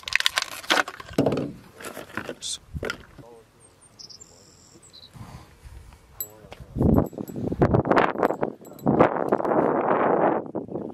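Clicks and rattles of fishing lures and tackle being handled in a tackle bag, with a few brief high chirps about four seconds in. A louder, noisy rustle takes over in the last three seconds.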